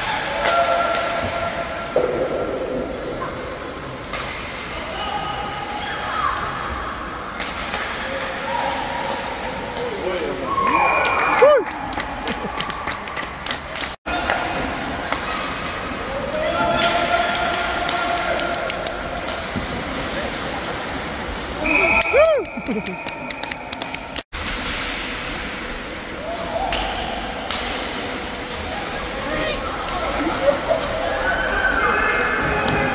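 Ice hockey game heard from the stands of an echoing rink: voices shouting across the ice, with sharp clacks of sticks and puck on the ice and boards. The sound cuts out for an instant twice.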